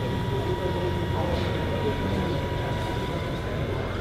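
Radio-controlled model Case IH 4994 tractor driving under load while pulling a six-furrow plough through sand. It gives a steady high whine that fades shortly before the end, over a low rumble and the murmur of voices.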